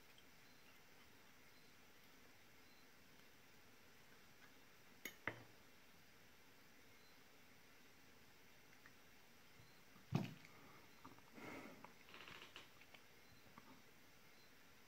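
Mostly near silence, with small metal clicks of pliers working the nickel strip on the end of an 18650 Li-ion cell: a quick double click about five seconds in, a sharper click about ten seconds in, then a second or two of faint scraping and rustling.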